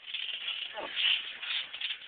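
Scuffling and rustling of bodies and clothing as two people grapple, with a faint voice in the middle.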